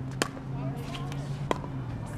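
Pickleball paddles striking a plastic pickleball during a rally: two sharp pocks about a second and a half apart, the first the louder.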